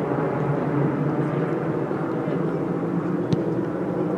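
Steady low outdoor background noise on a football pitch, with one sharp thud of a football being kicked about three seconds in.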